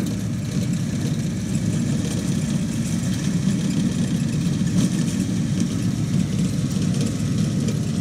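A tractor engine runs steadily as it drives a Toro ProCore 864 core aerator over turf, pulling soil cores.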